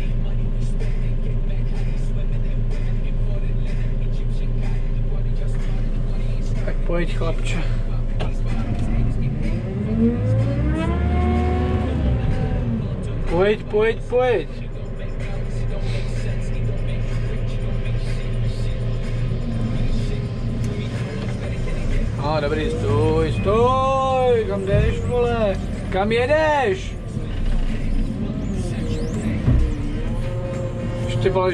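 JCB loader's diesel engine running steadily, heard from inside the cab. It revs up and back down about ten seconds in, then swells up and down several times in quick succession near the end.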